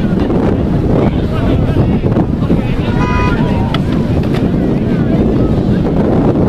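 Wind buffeting the microphone, with distant shouting voices in the background and a brief high tone about halfway through.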